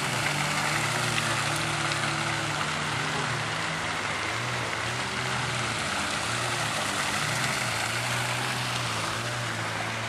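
Steady splashing of a garden fountain's water jets, with a low, steady engine drone underneath.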